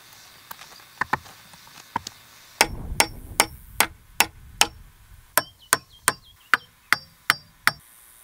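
Hammer blows on a log, each with a short metallic ring. A few scattered light knocks come first, then a steady run of strikes begins about a third of the way in, at two to three a second and getting a little quicker later on.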